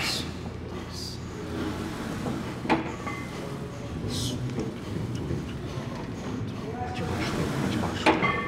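A man straining through heavy hack-squat reps, breathing hard in short, sharp hissing exhales, with a single knock about two and a half seconds in.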